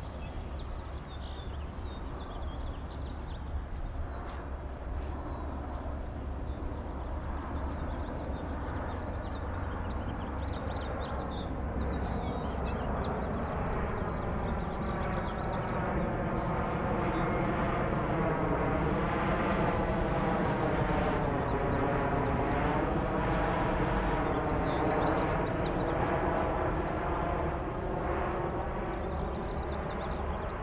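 An airplane passing high overhead: a broad rushing noise that swells slowly, peaks about two-thirds of the way through and begins to fade near the end.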